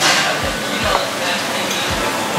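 Busy café room noise with indistinct background voices, and a fork clinking and scraping against a ceramic plate as it cuts into an omelet.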